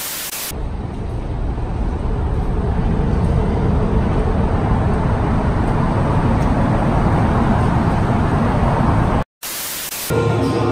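Short bursts of TV-static hiss at the start and near the end, each coming right after a brief dropout to silence. Between them, a steady rushing noise, heaviest in the low end, that slowly gets louder.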